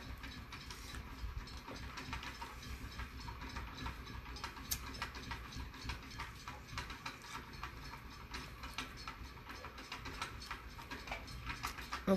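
Faint, irregular small clicks and ticks over a low steady hum, as a lighter is flicked and pre-rolled joints are lit.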